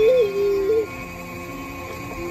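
A short high voice sound of under a second at the very start, its pitch bending up and down, over soft background music.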